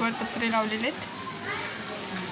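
Children's voices, talking and calling in short phrases.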